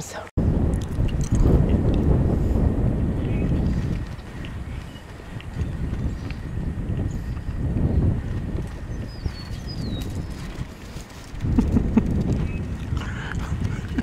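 Wind buffeting the microphone: a low rumble that gusts, strongest in the first few seconds and again near the end.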